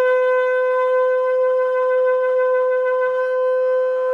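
Shofar sounding one long, steady blast on a single held note.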